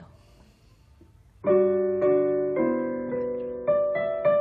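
Digital piano playing a slow passage of sustained chords and notes, entering about a second and a half in, with a new note or chord roughly every half second. It is a melody harmonised in sixths over a left-hand part.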